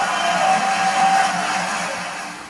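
Live orchestra holding a sustained note under a loud, dense wash of noise that swells to a peak about a second in and then fades away.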